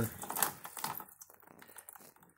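Thin stream of water and rusty gear oil draining from a Peerless 2338 transaxle's drain hole into a plastic drain pan: faint, irregular spattering ticks that thin out after about a second. The first fluid out is mostly water, a sign of water in the transaxle case.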